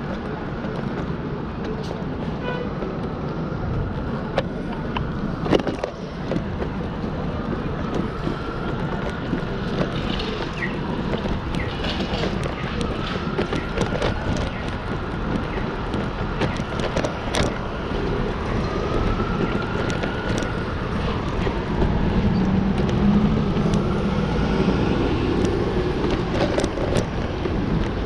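City street traffic noise: a steady rumble of passing cars, with scattered sharp clicks. A faint tone slowly rises and falls several times through the middle and later part.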